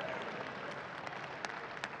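Congregation applauding, the clapping dying away.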